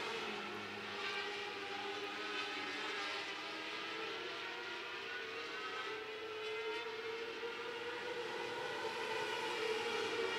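A pack of 600cc micro-sprint race cars running at high revs around a dirt oval: several high-pitched motorcycle-engine notes overlap, their pitch rising and falling as the cars lift and accelerate through the turns.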